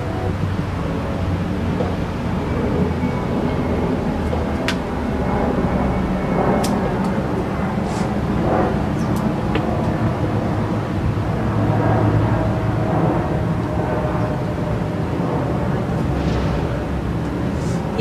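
Steady low outdoor background rumble with a few light clicks.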